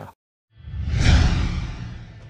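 A whoosh sound effect with a deep low rumble underneath, starting after a brief silence, swelling about a second in and then fading away.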